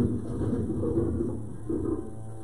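Low, rough animal growling from a lion and hyenas squaring off, heard as a nature documentary's soundtrack.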